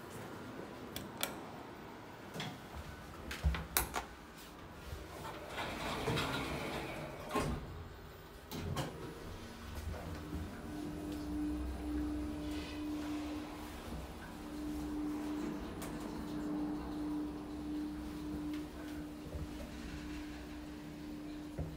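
OTIS Gen2 elevator: a few clicks, then the automatic sliding doors moving. From about ten seconds in, a steady hum with a low rumble as the car travels.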